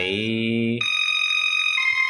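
Casio SA-21 electronic keyboard playing sustained single melody notes, with a change of note a little under a second in and another near the end. A man's voice sings a drawn-out lyric syllable along with it for the first part.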